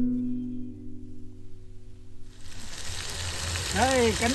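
Acoustic guitar music fading out, then, a little past halfway, the steady sizzle of chicken wings frying in a pan on a camp stove.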